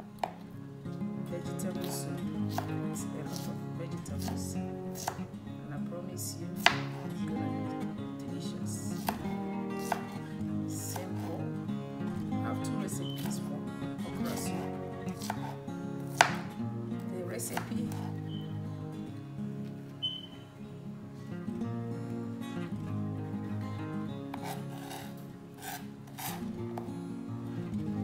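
Chef's knife slicing fresh okra on a plastic cutting board: irregular knocks of the blade against the board, two much sharper than the rest, about a quarter and just over halfway in. Background music with steady tones plays throughout.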